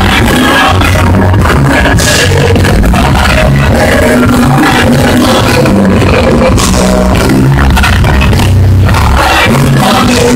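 Loud live church worship music from a band, with heavy bass and singing, running on without a break.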